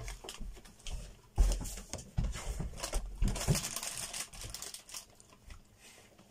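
Plastic Haribo marshmallow bag crinkling and rustling as hands reach into it, with small clicks and a thump about a second and a half in.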